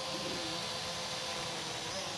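DEERC D50 toy quadcopter hovering close by, its small motors and propellers giving a steady buzzing whine.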